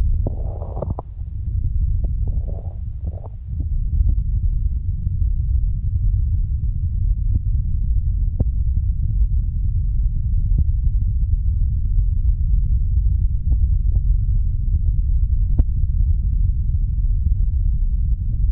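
Hands cupped and pressed over the silicone ears of a binaural microphone, giving a steady, muffled low rumble with faint scattered ticks. A few brief louder rushes come in the first few seconds.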